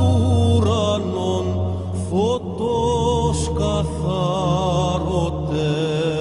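Byzantine chant: a solo voice sings a slow, ornamented melody with wavering, gliding notes over a held low drone (ison).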